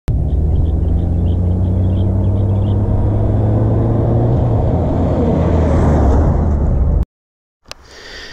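Honda Gold Wing GL1800 trike's flat-six engine running steadily as it approaches the roadside camera, growing louder and brighter near the end as it closes in. The sound cuts off suddenly about seven seconds in.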